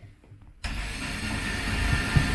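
Corded electric drill running steadily, driving screws up through the wooden mantle to fix it in place. It starts about half a second in and keeps going to the end.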